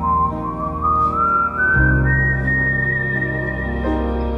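Background song: held chords and a bass line under a high, pure-toned melody that climbs in small steps and then holds. The chords change a little under two seconds in.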